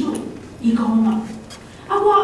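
Speech only: a woman preaching in Taiwanese. She says a short phrase with one drawn-out syllable about half a second in, then pauses briefly.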